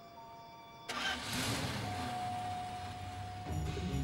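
A vehicle engine starting about a second in and then running, under sustained film-score music; low drum beats come in near the end.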